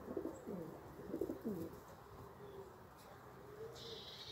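Valenciana pouter pigeon cooing: two quick coos that fall in pitch in the first second and a half, then a softer, longer coo near the end.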